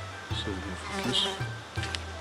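Soft background music with a flying insect buzzing near the microphone.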